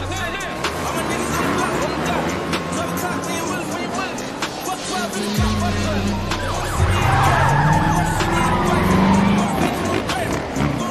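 Dirt bike engines revving, rising in pitch several times and louder in the second half, with tyre squeal, mixed over a music track.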